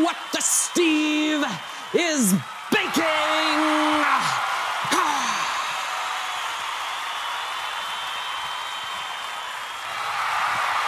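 A man's voice making wordless, drawn-out held calls over the first five seconds, then one long raspy growling yell.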